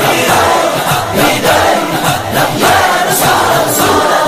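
A naat chanted by a chorus of male voices over a steady rhythmic beat.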